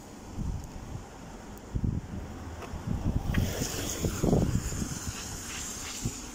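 A car passing close by on a wet road, its tyre hiss building to a peak about four seconds in, over wind rumbling on the microphone.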